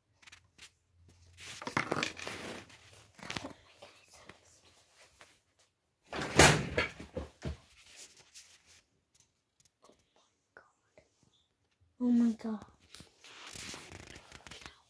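Rustling and handling noises close to the microphone, with a loud thud of a door being opened about six seconds in and a short vocal sound near the end.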